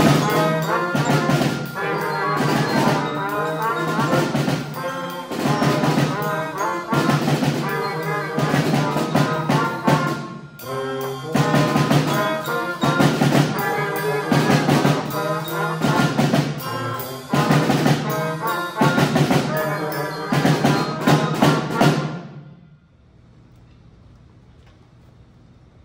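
A small student wind band of flutes, trumpets, trombone and low brass with a drum set plays a piece together, with a short break a little before the middle. The music stops about two seconds before the end.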